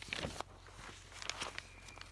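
Paper rustling: glossy cross-stitch magazine pages and chart leaflets being handled and turned, in a few short crinkles.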